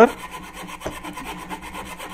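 Fine-bladed hand saw cutting slowly through thin brass sheet, a quiet, light rasping of the blade in the metal.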